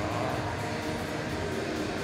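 Steady ice-hockey arena ambience: an even crowd murmur with a faint low hum, with no distinct events.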